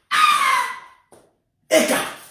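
A man's high-pitched scream, about a second long and falling slightly in pitch, followed near the end by a short shouted word.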